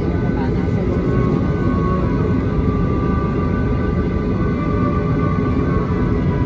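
Airliner cabin noise as the jet starts to move: a steady low rumble with a steady engine whine, and music playing over it.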